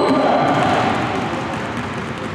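Several basketballs being dribbled at once on a hardwood gym floor, a dense, echoing clatter of overlapping bounces.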